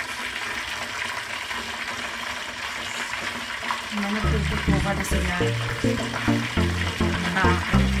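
Covered pot of water boiling on a gas stove, a steady bubbling hiss. About halfway through, background music with a heavy bass line comes in over it.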